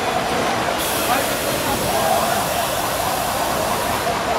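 Steady, loud rushing noise, with distant voices calling out faintly over it.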